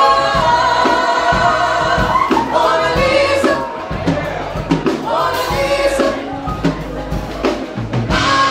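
A live soul band playing with women singing and a backing choir: held sung notes that bend in pitch over steady drum hits.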